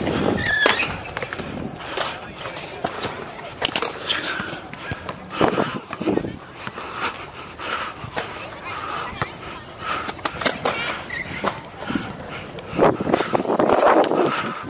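Small urethane freeskate wheels rolling over a concrete court, with scattered irregular clicks and knocks.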